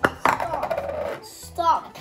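A sharp knock of a bowl against the tabletop, then a girl laughing, over light background music.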